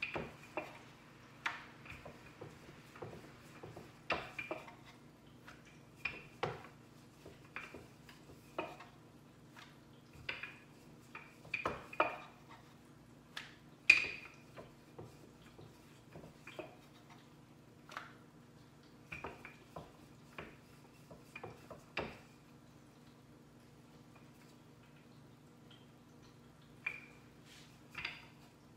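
Rolling pin working chapati dough on a wooden chopping board, with irregular light knocks and clacks of pin and dough against the board and one sharper knock about halfway. A steady low hum runs underneath.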